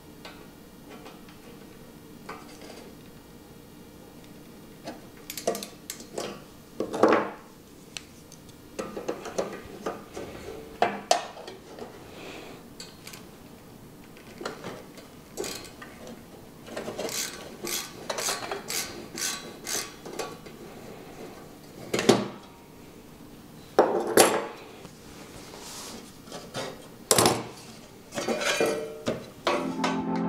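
Irregular metal clicks, clinks and scrapes of a screwdriver and needle-nose pliers working on the steel mixer chassis. The pliers hold a broken-loose nut behind the tab while an oversized screw is backed out. Several sharper metallic knocks stand out along the way.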